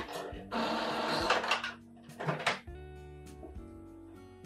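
Epson EcoTank inkjet printer's mechanism whirring briefly about half a second in as it starts a print job, followed by a short clunk around two seconds, over background music.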